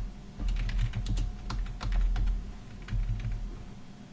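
Typing on a computer keyboard: irregular key clicks, coming thickest in the first half and thinning out towards the end.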